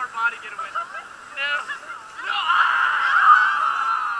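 Raft riders' voices chattering and laughing, then a louder, drawn-out shout from the group in the second half.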